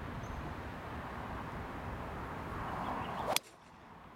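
A golf club swishing down through the air, the whoosh rising to a single sharp crack as it strikes the ball off the fairway about three and a half seconds in. A steady wind-like rush of outdoor noise lies under the swing and drops away at the strike.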